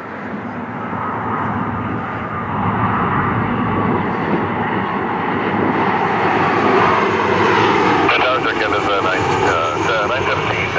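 Boeing 737 jet engines on final approach, a rumbling jet noise that grows louder as the airliner closes in and passes.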